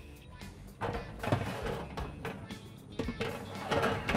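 Background music, with a metal oven rack clattering as it is moved and slid in the oven, about a second in and again near three seconds.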